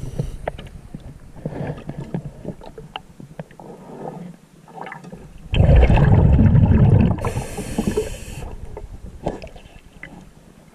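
Underwater sound picked up by a submerged camera: scattered small knocks and water noise, then a loud rush of bubbles for about a second and a half just past the middle, typical of a diver exhaling through a regulator.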